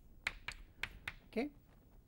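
Chalk writing on a blackboard: a handful of short, sharp taps and clicks as each letter is stroked in, about five in the first second and a half.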